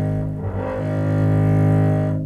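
Baroque double bass with gut strings, bowed on a sustained low note, with a bow change about half a second in. The tone is the wide, warm 'band of sound' of gut strings rather than a narrow projection.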